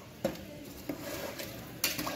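Metal ladle stirring rice and water in a pressure cooker, knocking against the pot's side a couple of times and then clinking louder several times near the end.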